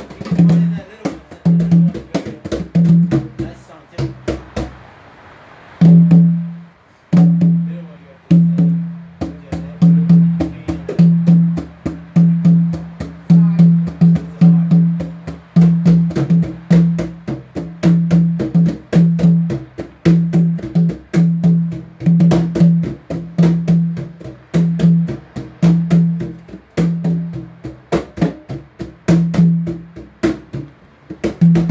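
Djembe played with bare hands: a steady rhythm of open tones and sharp slaps. The drumming eases off briefly about four seconds in and picks up again strongly about six seconds in.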